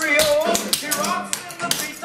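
Clogging taps on a wooden dance floor: a quick, even run of metal-tap clicks, about five a second, as two basic clogging steps are danced, over recorded pop music with singing.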